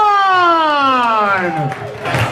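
One high-pitched voice holding a long yell that slides steadily down in pitch and fades out near the end.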